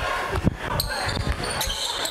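A basketball bouncing on a gym floor: several dull thumps, the loudest about half a second in, with players' voices alongside.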